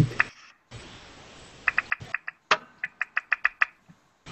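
A short laugh, then from under two seconds in an irregular run of a dozen or more sharp clicks over about two seconds, coming over a video call's audio. It is a stray noise on one caller's microphone line that the others can't place.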